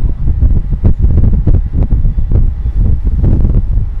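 Loud, irregular rubbing rumble of a shirt against a clip-on microphone as the arm works, with the scratchy strokes of a marker writing on a whiteboard.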